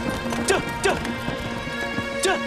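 Background music with sustained notes over a horse's hooves clip-clopping as it pulls a cart.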